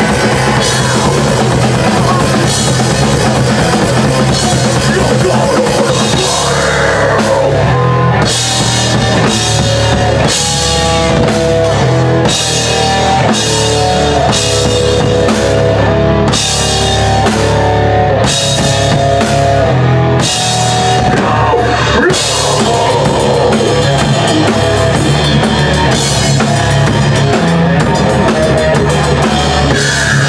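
Thrash metal band playing live at full volume: fast drum kit with bass drum under distorted electric guitars. Through the middle stretch the guitars play a stop-start riff of clear, stepping notes.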